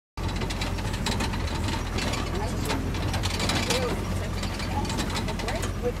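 Heard inside the cab of an off-road vehicle driving over a rough dirt track: a steady low engine drone, with frequent rattles and knocks from the body and fittings jolting over the bumps.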